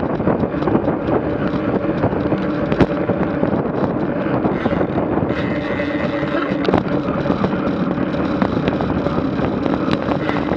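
Wind rushing over a bike-mounted Garmin VIRB action camera's microphone at about 20 mph, with the steady hum of road tyres on asphalt. Frequent short clicks and rattles run through it.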